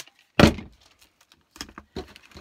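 A handheld packing-tape gun set down on a folding table with a single loud thunk about half a second in, followed by a few faint taps as hands press tape onto a plastic mailer envelope.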